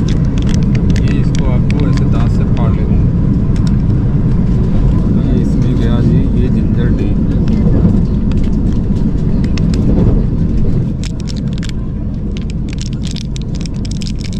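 Steady low running rumble of a Vande Bharat Express electric trainset, heard from inside the coach; it eases about eleven seconds in. Near the end a paper premix sachet crinkles and crackles as its powder is shaken into a cup.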